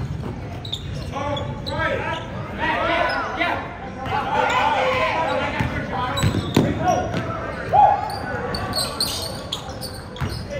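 A basketball dribbled on a hardwood gym floor during live play, with players calling out and the bounces and voices echoing around the hall.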